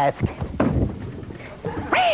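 A man's voice imitating an animal call, one pitched cry that rises and then falls near the end, in the manner of a cat's meow.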